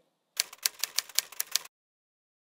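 Typing sound effect: about a dozen sharp key clacks in quick, irregular succession.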